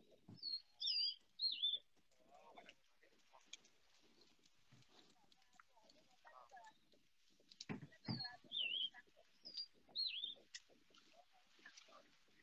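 A small songbird singing outdoors: a quick phrase of short, swooping whistled notes near the start, then another phrase from about eight seconds in. A faint click comes just before the second phrase.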